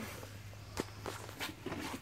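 Faint footsteps and light handling knocks, with one sharper tick about a second in and quicker light ticks near the end, over a low steady hum.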